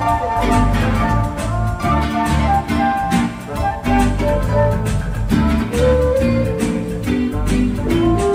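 Instrumental band music: guitar playing over a repeating bass line and a steady beat.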